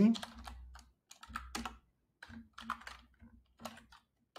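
Typing on a computer keyboard: a string of separate keystrokes at an uneven pace.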